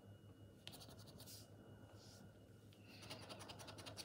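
Faint scratching of a plastic scratcher chip rubbing the latex coating off a paper scratchcard, in short strokes that come quicker and denser near the end.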